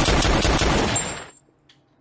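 A handgun fired in a rapid burst of shots, a dense string of cracks that dies away about a second and a half in.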